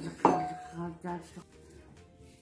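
A bowl set down on a table with one sharp clink that rings briefly, about a quarter second in.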